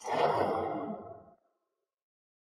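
A single breathy sigh, starting suddenly and fading out over about a second and a half.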